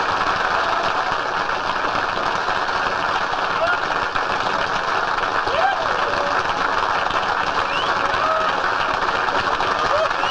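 Studio audience applauding steadily, with a few voices calling out over the clapping.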